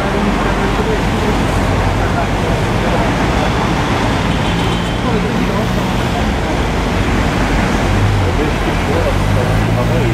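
Fire trucks' engines running steadily with a low, even hum, mixed with indistinct voices and street traffic noise.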